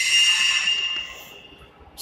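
A single high-pitched ringing tone, steady in pitch, that holds for about a second and then fades away.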